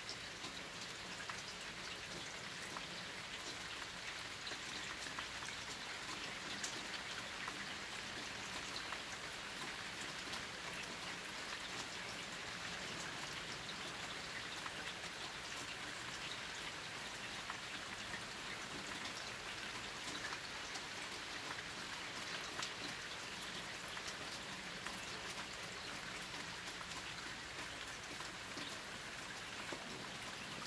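Steady rain falling: an even hiss with many small drop ticks throughout.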